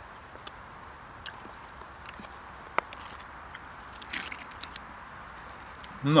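Plastic MRE food pouch crinkling briefly as it is handled, about four seconds in, with a few scattered light clicks and ticks before it, over a steady faint background hiss.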